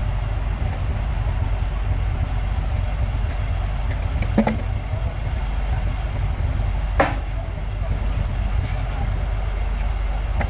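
Heavy diesel engine idling with a steady low rumble, with two sharp knocks about four and seven seconds in as wooden blocks are set down by the loading ramps.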